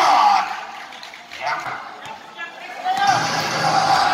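Indistinct talk from a basketball game's play-by-play commentary and the crowd. It is loud at the start, drops to a quieter stretch in the middle, and comes back loud near the end.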